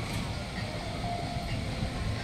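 A steady low rumble with a faint hum above it, like a small motor running.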